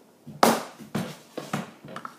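Plastic ice-lolly mould and frozen soap lolly being handled on a countertop: a few sharp knocks and scuffs, the loudest about half a second in.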